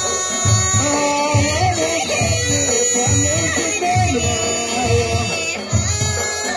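Amazigh Ahwash music: a troupe's large frame drums beating a steady, even rhythm about once a second, with voices singing a chant over the drums.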